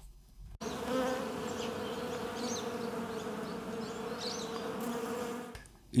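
Bees buzzing in a steady hum that starts about half a second in and fades out shortly before the end.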